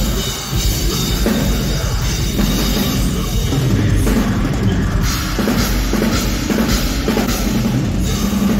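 Metalcore band playing live and loud: heavy drums with a pounding bass drum under electric guitar.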